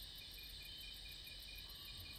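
Faint crickets chirping in a steady even rhythm, a few short chirps a second, over a soft steady hiss.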